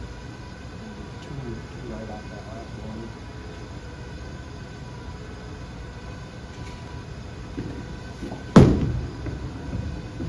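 Steady bowling-alley rumble of balls rolling and lane machinery. About eight and a half seconds in, a loud thud as a reactive-resin bowling ball, the Storm Absolute, is laid down on the lane, followed by its rolling rumble.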